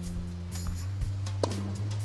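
Background music with steady low notes, and about one and a half seconds in a single tennis racket striking a ball: a weak, dull hit, because the player's hips are held and she cannot drive the shot with her legs.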